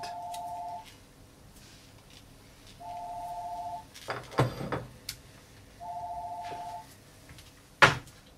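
A telephone ringing: three short, warbling electronic rings about three seconds apart. A thump comes a little over four seconds in, and a sharp click near the end.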